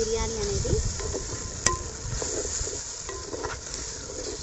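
Vegetables, herbs and whole spices sizzling in hot oil while a wooden spatula stirs them around the pot, with one sharp click about one and a half seconds in.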